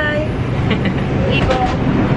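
Subway car running, a steady low rumble heard from inside the car, with brief fragments of voices over it.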